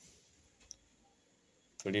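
Near silence with a single short, faint click a little under a second in. A man's voice starts just before the end.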